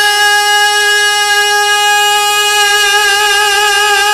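A man's unaccompanied voice holding one long, steady high note in a naat recitation.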